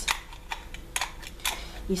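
A few sharp clicks and clacks of hard plastic as a small battery-powered electric foot file is handled, the loudest about a second and a second and a half in.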